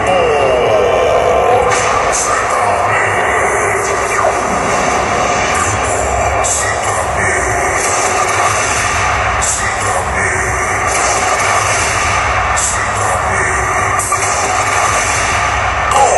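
Loud live band music through a concert sound system, heard as a dense, noisy wash with a voice over it.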